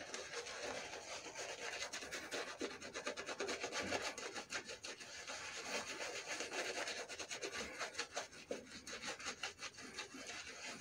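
Badger-hair shaving brush being worked in quick back-and-forth strokes over a lathered, stubbled face, giving a soft, fast, scratchy rubbing.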